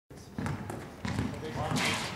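Basketball bouncing on an outdoor hard court, two low thumps about half a second apart, with players' voices calling out near the end.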